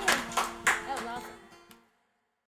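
A few people clapping and briefly talking while the last acoustic guitar chord rings on, everything fading out to silence just before the end.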